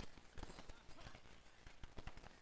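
Street hockey play: irregular clacks of hockey sticks against the ball and court, mixed with running footsteps and players' voices in the background.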